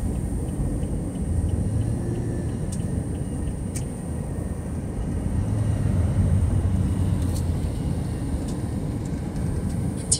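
Road noise heard inside a car's cabin while driving at highway speed: a steady low rumble from tyres and engine, with a few faint clicks.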